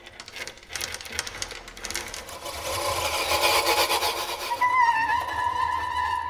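Experimental ensemble music: rapid clicking and rattling sounds thicken into a dense, noisy swell, then a single held high note comes in about two-thirds of the way through.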